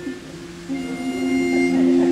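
Barbershop quartet's pitch pipe blown for the starting note: a steady, reedy tone for about a second, beginning under a second in. Singers hum their starting pitches along with it as held notes.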